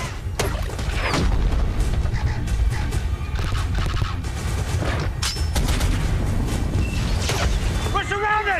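Action-film battle sound mix: a constant deep rumble with repeated blasts and weapon fire at irregular intervals, under a film score.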